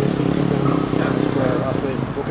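Motocross motorcycle engines running on the track, a steady drone under voices.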